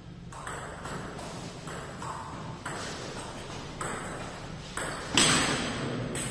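Table tennis rally: the ball clicking off the bats and the table in an irregular run of hits, about one every half second to a second, with a louder sharp sound about five seconds in.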